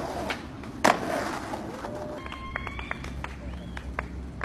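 A skateboard hitting concrete with one sharp, loud clack about a second in, over outdoor noise, followed by short squeaky chirps and a few light clicks.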